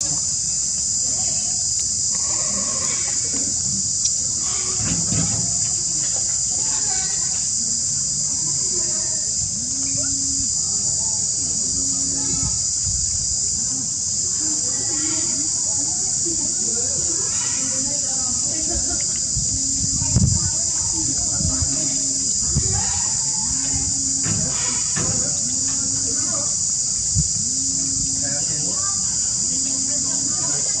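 Insects' steady high-pitched drone, with a short low tone repeating every couple of seconds and a few soft bumps, the loudest about two-thirds of the way through.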